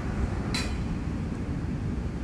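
A steady low background rumble with no clear source, and one brief high hiss about half a second in.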